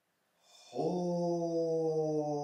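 A low, steady drone-like note, like a chanted 'om', starts a little under a second in and holds, sinking slightly in pitch.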